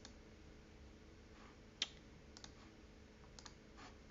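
Near-silent room tone with a few scattered faint clicks from operating the computer, the sharpest just under two seconds in.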